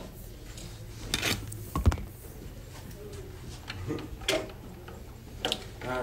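A few scattered clicks and knocks from hands handling parts and wiring inside an open machine cabinet, over a faint steady low hum.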